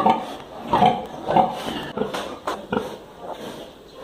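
Piglets squealing and grunting in short calls as they jostle for the sow's teats. The calls are thickest in the first second and a half and thin out afterwards, with a few short knocks around the middle.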